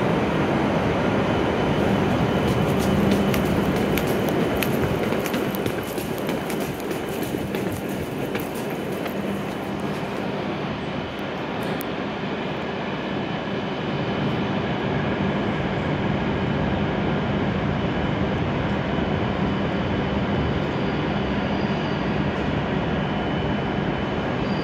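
Steady noise of E7 series Shinkansen trains at the platform, with a faint low equipment hum, as an E7 series train runs slowly in alongside the platform. The noise grows slightly louder in the second half as the train draws near.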